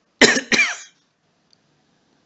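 A man coughs twice in quick succession, the two loud coughs close together near the start, then quiet.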